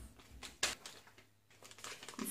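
Faint, scattered clicks and rustles of a padded paper mailing envelope being handled, with a brief quiet moment in the middle.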